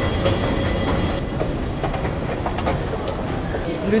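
Steady low rumble and clatter of machinery and rail noise in an underground metro station, with a few faint high tones over it.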